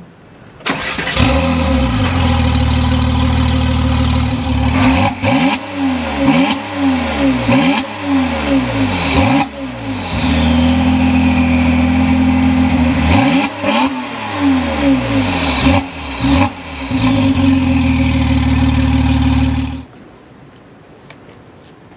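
W Motors Lykan HyperSport's twin-turbo flat-six engine starting about a second in and running at a high idle, then blipped in two series of quick revs, its pitch sweeping up and falling back each time, with steady idling between the series.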